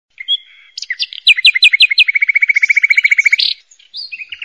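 A bird singing: a short whistle, then a run of quick down-slurred notes, then a fast, even trill that stops abruptly.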